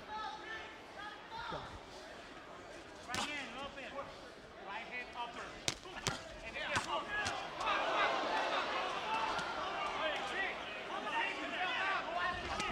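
Boxing gloves landing punches in a few sharp smacks, amid indistinct shouting from the crowd and cornermen that grows louder and busier in the second half.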